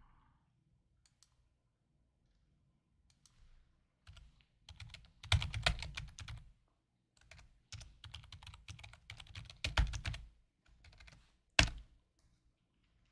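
Computer keyboard typing: bursts of rapid key clicks starting about four seconds in, with one sharper click just before the end.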